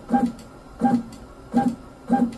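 Creality K1 Max's Z-axis stepper motors moving the bed down in short jogs: four brief hums, evenly spaced about three-quarters of a second apart.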